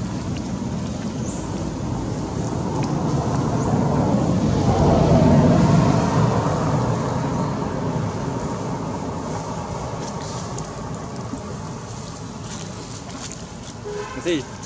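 A road vehicle passing, its engine and tyre noise growing louder to a peak about five seconds in, then slowly fading away.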